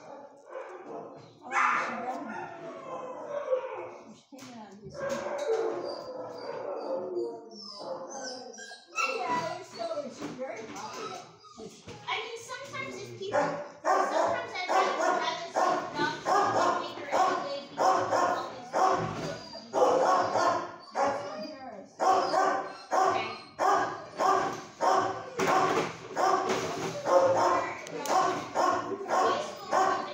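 Dogs barking in a shelter kennel: scattered dog sounds at first, then from about halfway through a loud, steady run of barks at about two a second.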